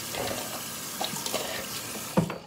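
Water running from a bathroom tap into the sink basin, a steady splashing hiss, with a couple of light knocks about a second in.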